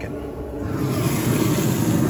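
Pellet grill running hot, its fan and fire giving a low rumble that grows louder about half a second in as the lid is lifted.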